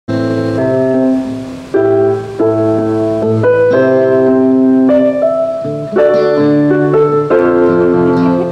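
A keyboard playing held chords that change every second or so, with an acoustic guitar underneath.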